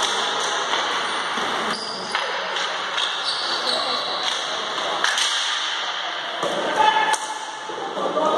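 Ball hockey play in an echoing sports hall: sticks and the ball clacking against each other and the hard floor in scattered sharp clicks, with brief high squeaks of trainers and players' shouts mixed in.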